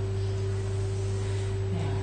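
A steady low hum with a fainter, higher steady tone above it, unchanging throughout.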